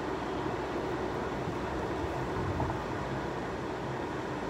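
Steady road and engine noise inside the cabin of a moving car: an even rumble and hiss with no sudden events.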